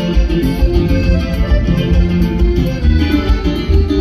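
Loud live norteño band music, with a strong, pulsing bass under steady melody notes.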